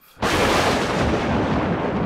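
A sudden boom-like crash, a dramatic sound effect with no pitch to it, that starts a moment in and slowly fades out over about three seconds.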